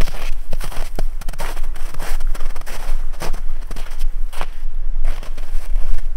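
Footsteps walking on snow: an irregular run of steps, about two to three a second. Wind rumbles on the microphone underneath.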